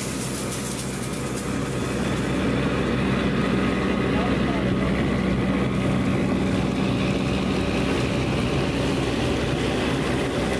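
Steady drone of an engine-driven fire pump feeding a charged fire hose, with the hiss of water spraying from the nozzle.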